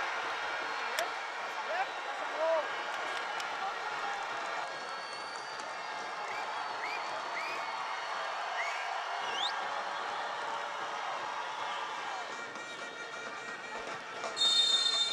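Stadium crowd noise: a steady murmur of many voices with scattered short shouts rising above it, and one sharper rising call about two-thirds of the way through.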